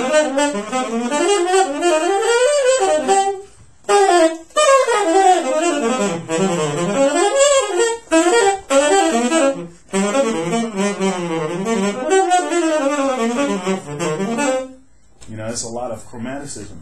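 Solo saxophone playing fast double-time jazz lines in three long phrases of rapid notes that climb and fall. The lines are a demonstration of extending a line with chromatic notes and enclosure.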